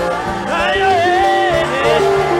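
Gospel choir singing praise with band accompaniment: long held notes over a steady bass line, with a rising glide about half a second in.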